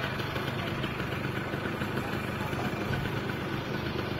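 Motorcycle engine idling steadily, with street traffic noise around it.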